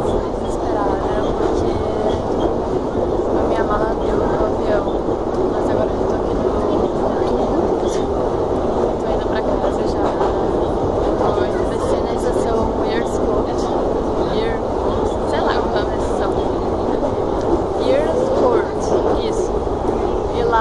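London Underground train running, a loud steady rumbling noise heard from inside the carriage, with voices talking over it.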